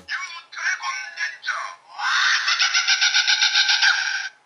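Electronic toy sound effects from a small speaker: a few short voice-like chirps, then about two seconds of a rapid pulsing electronic sound, thin and tinny.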